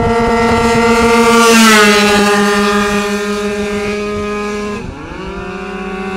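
Two-stroke scooter engines held at full throttle in a drag race, a high, steady engine note. It is loudest and drops in pitch as the scooters go past, about two seconds in. Near the end the note briefly drops and climbs back up.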